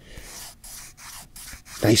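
A hand rubbing back and forth over the felt lining inside a leather wallet phone case: a soft, dry brushing in a few strokes.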